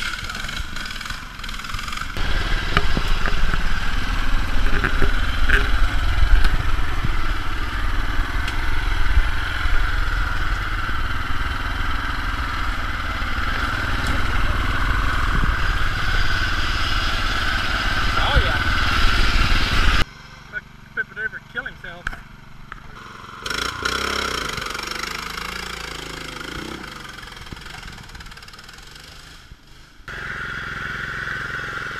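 Modified riding mower engines running and revving under load, mixed with people's voices. About two-thirds of the way through the sound cuts off abruptly to a quieter stretch with a few clicks, then a softer engine sound fades out.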